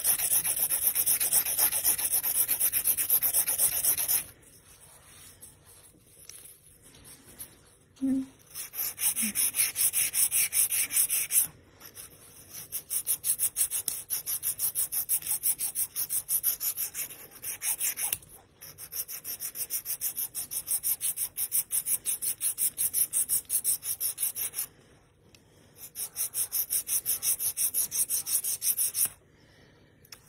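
Hand-held nail file rasping rapidly back and forth across artificial nails, in several bouts of quick strokes with short pauses between.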